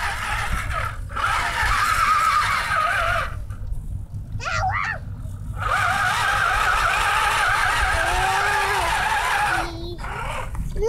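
Electric motor and gearbox of an RC4WD Trail Finder 2 scale RC truck whining as it drives, the pitch wavering with the throttle. The whine cuts out briefly twice and sweeps up and down in one quick rev about halfway through.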